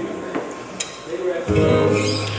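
Acoustic guitar played lightly with a few picked notes, then a chord strummed about one and a half seconds in that rings on.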